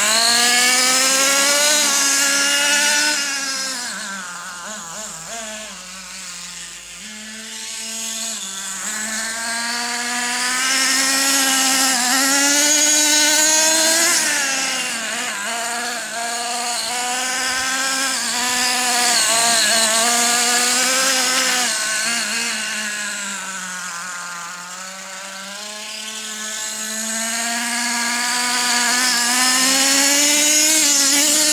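Traxxas T-Maxx RC monster truck's small two-stroke nitro engine, a high-pitched buzz revving up and easing off continually as the truck drives. It fades twice as the truck runs farther away and grows loud again as it comes back near.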